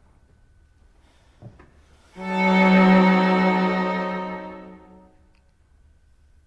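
String quartet of two violins, viola and cello bowing a single sustained dissonant chord (F, A, C, E flat, heard as an augmented sixth chord). It enters firmly about two seconds in, is held for about three seconds and dies away gradually. Just before it there is one faint click.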